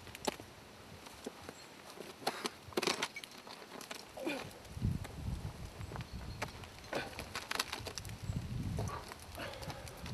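Scattered scrapes and knocks of a climber in climbing shoes clambering up a granite boulder. Wind rumbles on the microphone from about halfway.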